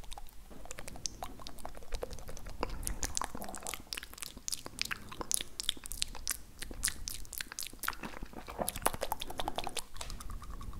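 Wet mouth and tongue clicks and kissing sounds made close to the microphone, in irregular runs that grow denser from about three seconds in.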